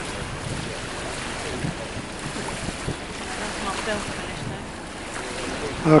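Steady rush of wind on the microphone over water noise, with faint voices in the background and a short laugh right at the end.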